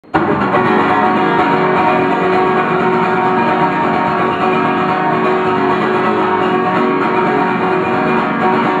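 Acoustic guitar strummed steadily, with chords ringing out continuously; no singing yet.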